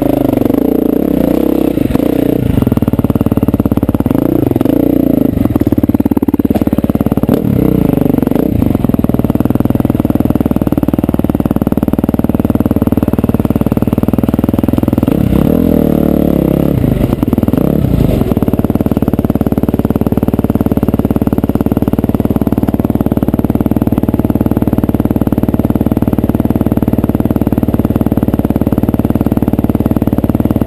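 Dirt bike engine close to the microphone, revving up and down as it rides a rough trail. About halfway through it settles to a steady idle.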